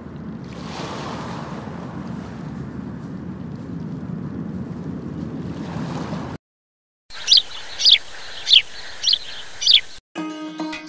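Water rushing steadily along a concrete washing trough. After a short silence, a bird gives five quick chirps, each sweeping downward, about half a second apart, over faint hiss.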